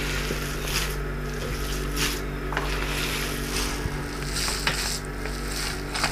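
Bare hands kneading and squeezing a large mass of minced meat in a plastic basin: soft wet squelching in irregular strokes, over a steady low hum.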